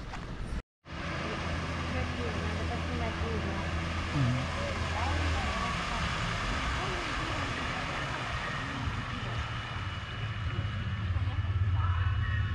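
A steady low engine hum with faint distant voices behind it, starting after a brief cut-out about a second in.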